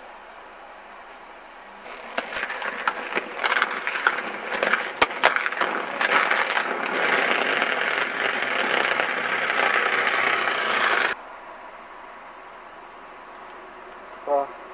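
Inline skate wheels rolling over pavement with scattered sharp clacks and knocks, then a louder, steady scraping of skates grinding along a concrete ledge. The sound starts about two seconds in and cuts off abruptly about eleven seconds in.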